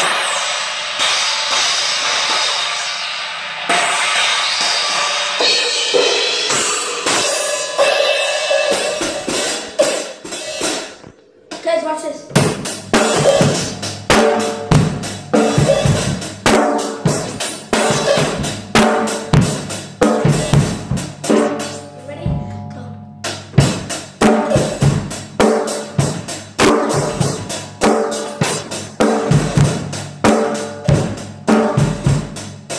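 A drum kit played with sticks: a long ringing, noisy wash for about the first third, then a steady beat on snare, bass drum and cymbals comes in about twelve seconds in, stops briefly about two-thirds of the way through, and starts again.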